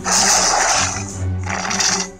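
Sound effects from an augmented-reality card battle app, with background music underneath. There are two loud hissing crash-like bursts, the first lasting about a second from the start and the second near the end, as an attack hits a character.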